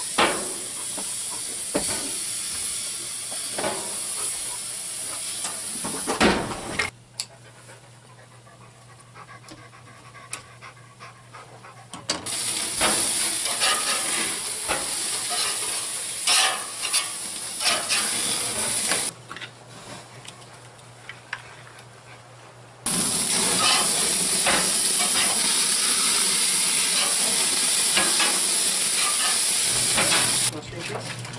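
Hamburger patties sizzling on a hot gas grill, with scattered clicks and scrapes as they are handled on the metal grate. The sizzle drops away abruptly twice and comes back.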